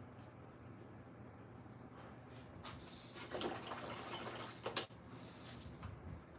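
Faint handling sounds of a paintbrush and paint palette: a few light clicks, then a short stretch of soft scraping and swishing about three to five seconds in.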